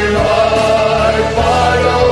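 Several layered takes of one male voice singing held, wordless notes in harmony like a choir, over an orchestral backing with violin. The chord shifts about a quarter second in and again past the middle.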